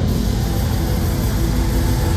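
Death metal played live through a festival PA: heavily distorted, low guitars and fast drumming in a dense, steady wall of sound.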